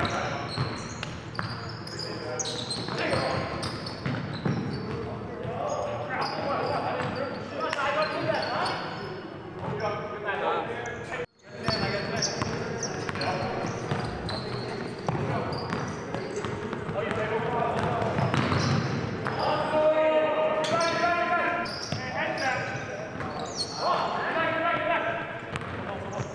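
A basketball game in a gymnasium: a ball dribbling and bouncing on the hardwood court among players' shouts and calls, with a brief dropout in the sound about eleven seconds in.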